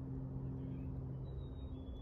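Faint, high whistled bird call in the second half, a held note followed by a slightly lower one, which is taken for a chickadee. It sounds over a steady low hum.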